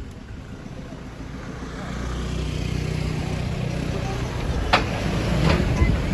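Car engine and tyres rumbling at low speed as the car moves off, growing louder about two seconds in and then holding steady. Two short clicks near the end.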